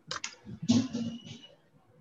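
A few quick clicks at a computer, as a microphone is being switched off, followed by a brief, fainter voice.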